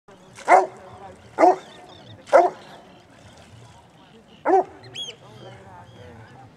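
Newfoundland dog barking: four deep single barks, the first three about a second apart and the fourth about two seconds later.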